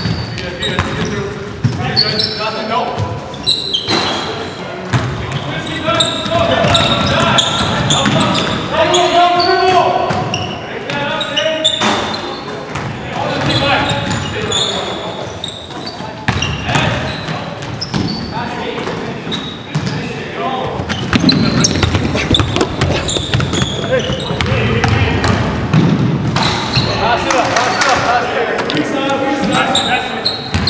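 Basketball game sounds in a gym: a ball bouncing repeatedly on the hardwood floor, short high squeaks and indistinct shouting from players, all echoing in the hall.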